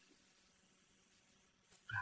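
Near silence: room tone in a pause between spoken sentences, with a brief faint voice sound just before the end.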